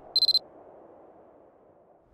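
A short electronic beep sound effect: a high, pure tone stuttering in a few quick pulses about a quarter-second in, followed by a faint, fading low drone.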